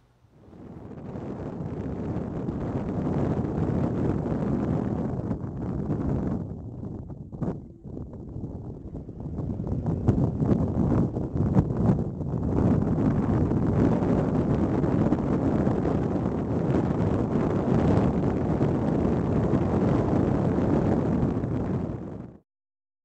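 Wind rushing over a small action camera's microphone, with road noise from the moving car it rides on. It rises in right at the start, eases for a couple of seconds about six to eight seconds in, then holds steady.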